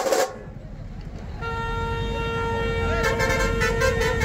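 A short loud crash right at the start, then about a second and a half in a single steady horn note begins and holds at one pitch to the end, over the low rumble of a crowd.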